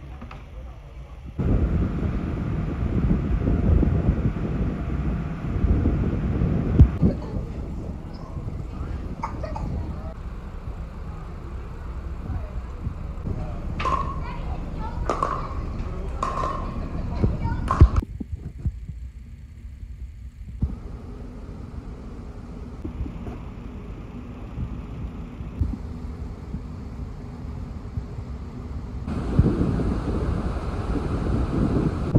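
Pickleball paddles hitting a plastic ball: four sharp pops with a short ringing, about a second apart, over steady low rumbling noise and indistinct voices.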